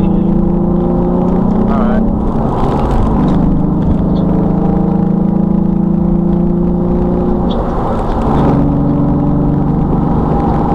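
Car engine drone heard inside the cabin, its pitch climbing steadily as the car accelerates. The pitch drops at gear changes about three seconds in and again around eight seconds in, over a steady low road rumble.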